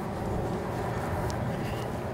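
Steady low outdoor background rumble, with one faint brief click a little past halfway.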